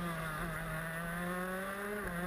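Honda two-stroke engine of a stock-moto shifter kart, heard onboard, its note climbing steadily as the kart accelerates out of a corner onto the straight.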